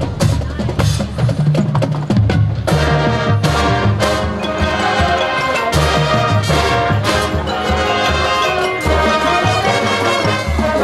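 High school marching band playing loudly: sustained brass chords over the drumline's repeated hits.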